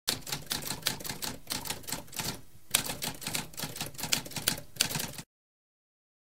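Typewriter keys clacking in rapid succession, with a short pause about halfway through, then stopping abruptly a little before the end.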